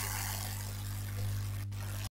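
Steady low electrical hum with an even hiss from the microphone and sound system, with a momentary dropout near the end.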